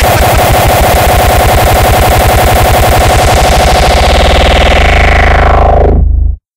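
Industrial hardcore music: a very fast, heavy, distorted kick-drum roll hammering out at an even rapid rate, with its treble fading away over the last two seconds.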